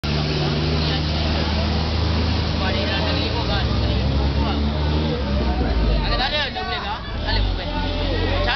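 Busy street sound: a vehicle engine running with a steady low hum under people talking, the hum fading after about five seconds as more high-pitched voices come in near the end.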